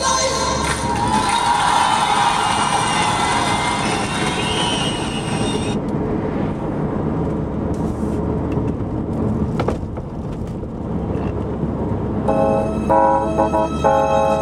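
Music plays and stops about six seconds in. After that comes the steady road and engine noise of a car being driven, with a single knock about two thirds of the way through. Instrumental music starts again near the end.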